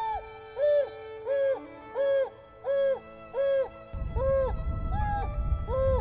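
African wild dog giving its hoo contact call, a run of short mournful hooting notes alternating between a lower and a higher pitch: a lone dog calling for its lost pack mates. Background music with held notes runs underneath, and a low rumble comes in about four seconds in.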